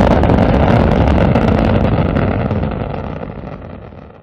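Rocket engine roar: a loud, deep rumble that fades away over the last two seconds.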